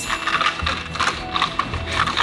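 Plastic juggling rings clicking and clacking against each other as they are handled, over background music.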